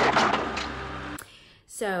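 Vacuum cleaner running loudly, a steady motor hum under a rush of noise, cutting off suddenly a little over a second in. A woman starts speaking near the end.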